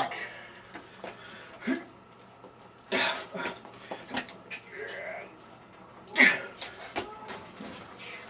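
A man grunting and breathing hard in several short strained bursts, the loudest about six seconds in, as he squeezes a pair of bolt cutters that will not bite through a locker padlock.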